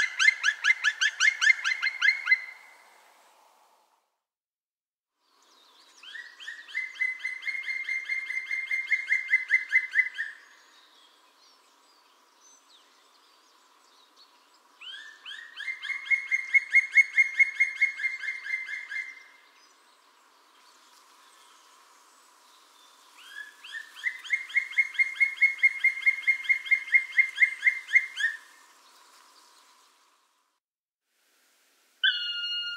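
Black woodpecker calling: loud, ringing series of rapidly repeated 'kwee' notes, about four a second. Each series lasts around four seconds and rises slightly in pitch over its first notes, and there are four series with pauses of a few seconds between them.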